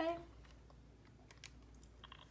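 Keys of a Texas Instruments TI-30XS MultiView calculator being pressed: a quick run of soft, sharp clicks a little over a second in.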